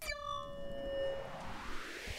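Opening of a hip-hop backing track: a sudden bell-like hit with several pitches fading over about a second and a half, under a swell of hiss that rises in pitch.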